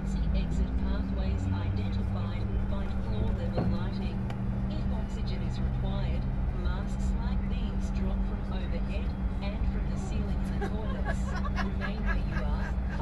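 Steady low hum inside a Fokker 100 airliner cabin on the ground, with indistinct voices talking over it.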